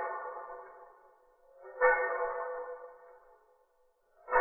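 A violin bow drawn to sound a pitched, ringing tone with overtones that fades away. The tail of one stroke dies out early, and a new stroke starts suddenly about two seconds in and fades again.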